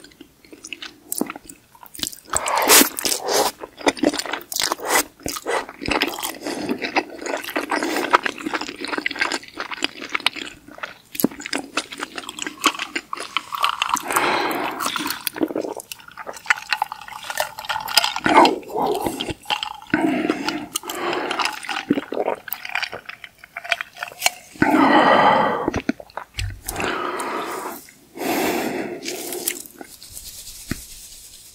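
Close-miked eating sounds: wet chewing and slurping of noodles and pasta, with many sharp mouth clicks, and sips of a cold drink through a straw from a glass jar.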